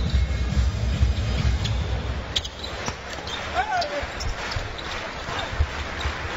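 Live basketball game sound: the ball bouncing on the hardwood court and a short sneaker squeak about midway, over arena crowd noise. Arena music with a thumping beat plays for the first two seconds or so, then drops away.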